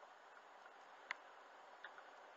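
Near silence inside a moving car: a faint steady hiss, with one sharp click about halfway through and a fainter click near the end.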